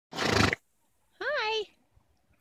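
A horse gives one short, loud breathy snort, then a woman's voice makes a brief high-pitched call that rises and falls.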